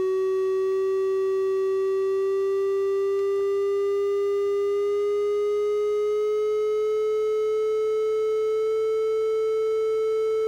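Befaco Even analog VCO's triangle-wave output, a steady tone with a soft set of overtones, gliding slowly upward in pitch as its fine-tune control is turned to bring it to 440 Hz.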